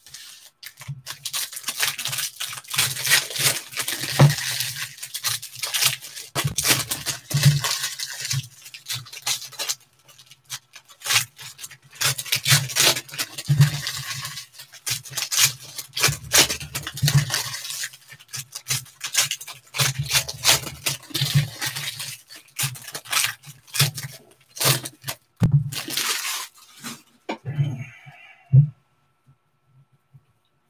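Foil trading-card pack wrappers crinkling and being torn open by hand, in repeated spells with short pauses, with low knocks of handling on the table.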